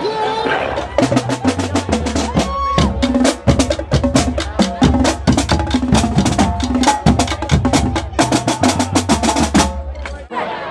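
Marching band drumline playing a cadence: fast snare drum strokes over bass drums tuned to several pitches, cutting off suddenly at the end.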